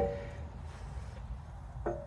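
Quiet background with a faint, steady low rumble and no distinct event; a man's voice is heard briefly at the very start and again near the end.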